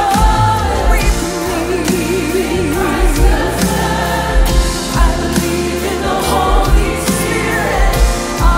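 Live worship music: a woman's lead voice with a group of singers behind her, singing "I believe in God our Father, I believe in Christ the Son" over a band with a steady drum beat.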